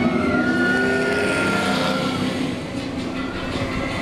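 Race-car engine sound passing by: a whine that rises, holds for about two seconds and then fades, over steady background noise.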